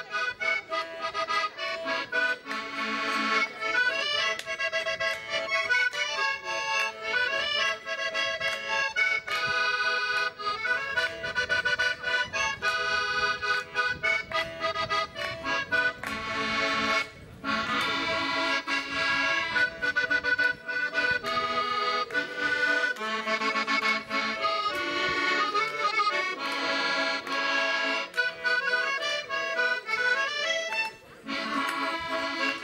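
Red button accordion played solo, a tune with chords running continuously. It breaks off briefly about halfway, then resumes.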